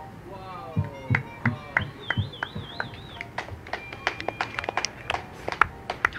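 Scattered audience finger-snapping and clapping in irregular sharp strikes, the open-mic sign of approval for a poem just read.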